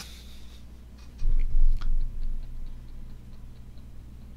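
A low, dull thump about a second in, the loudest thing here, with a small click as it ends. It is followed by a run of faint quick ticks, about five a second.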